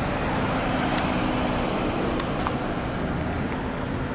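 Outdoor road traffic: a vehicle engine running and steady tyre and road noise, with a faint low hum in the middle.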